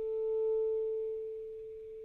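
Solo saxophone holding one long, soft, nearly pure note that swells a little and then slowly fades away.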